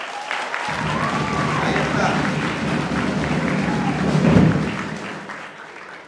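Audience applauding, with music playing under it. The applause builds, peaks about four seconds in, then dies down.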